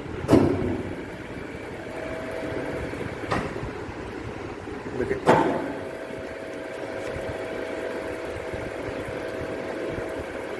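Universal testing machine's hydraulic unit running with a steady hum whose tone grows stronger about halfway through, with three sharp knocks of metal being handled.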